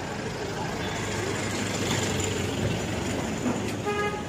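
Street traffic: a car driving past close by on a wet road. A short car-horn toot comes at the very end.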